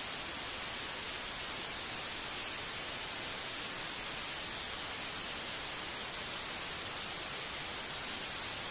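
Steady, even hiss of television static, brightest in the high end, with no tone or rhythm in it.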